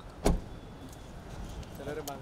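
A single sharp thump about a quarter second in, over a steady low rumble of traffic-like background noise, with a brief voice near the end.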